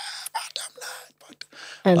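Soft, breathy laughter and airy exhales in short bursts, with no voiced pitch. A man starts talking near the end.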